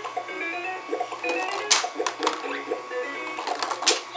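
A ball-popper toy playing its electronic tune, with sharp clacks of plastic balls striking the plastic bowl, the loudest just under two seconds in and just before the end.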